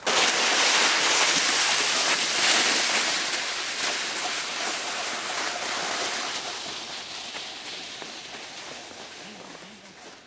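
Snowboard sliding over packed snow, a steady scraping hiss that starts suddenly and fades away gradually as the board moves off.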